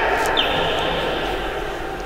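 Echoing ambience of an indoor handball gym: an indistinct, steady hubbub of voices and game noise, slowly fading. A faint, thin, high steady tone comes in about half a second in.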